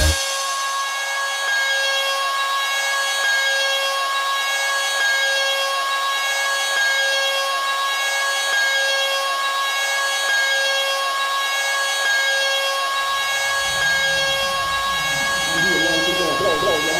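Electronic dance music in a DJ mix with the bass cut out at the start, leaving a steady high synth line with a wavering texture. The bass and low end come back in near the end.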